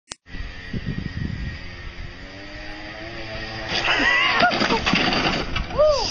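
A small ATV's engine running, its pitch rising slowly as it moves off. From about four seconds in, people's voices call out over it.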